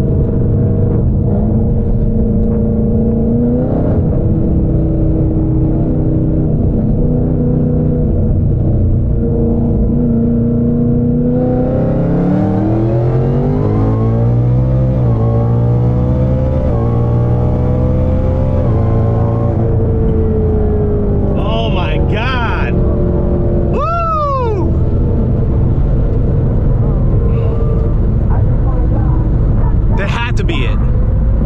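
Cammed Roush Mustang's 5.0 V8 heard from inside the cabin. It runs steadily at first; then from about 11 seconds in it makes a wide-open-throttle pull, its pitch climbing in several rising steps as the automatic upshifts, with the rear tyres spinning. It drops back off power at about 20 seconds.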